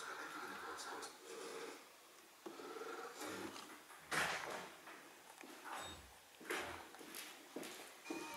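A cat scrambling and scratching on a sisal-rope scratching post and its carpeted base: a few short rustling scrapes, the loudest about four seconds in, over faint background voices.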